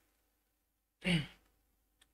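Near silence, then about a second in a man's single short, breathy exhale, like a sigh.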